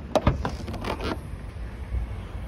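Audi A3 hatchback tailgate being unlatched and lifted open: two sharp clicks from the release catch, then about a second of scraping mechanical noise as it rises. A low wind rumble runs underneath.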